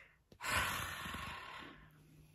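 A woman's heavy sigh: a long breath out that starts with a small click, is loudest at the start and fades over about a second and a half.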